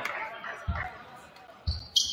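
A basketball bouncing on a hardwood gym floor: three separate low thumps, about a second apart. A brief high squeak comes near the end.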